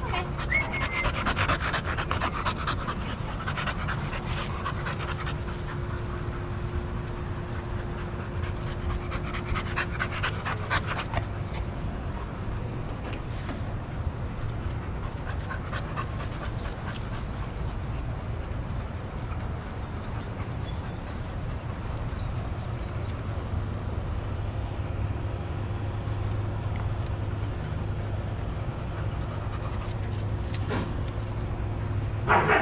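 Dogs panting close by, steady and continuous, over a steady low hum.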